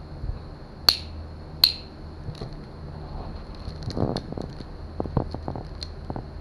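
Two sharp clicks from a Benchmade folding pocket knife being opened and handled, about a second apart near the start, then a run of lighter clicks and crinkles as the blade goes to the plastic wrapping, over a steady low hum.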